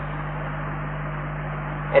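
Steady electrical hum and hiss of an old tape recording, with no other sound.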